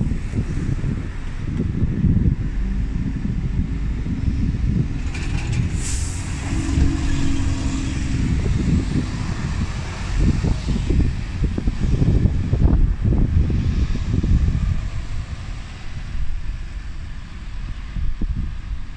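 Diesel single-decker buses running and pulling away close by, with a short air-brake hiss about five to six seconds in. The engine sound fades slightly near the end as the bus draws off.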